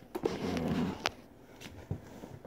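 Cardboard box being handled and shifted: a few sharp clicks and taps with a short rub between them.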